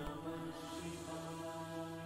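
Soft background devotional music in a pause of the narration: a sustained drone of steady, held tones.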